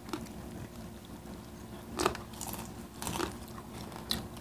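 Close-up eating sounds: chewing with a few short crisp crunches and mouth clicks from crispy fried food, the loudest about two seconds in.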